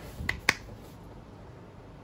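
Two quick, sharp clicks made with the hands, the second louder, both within the first half-second, then quiet room tone.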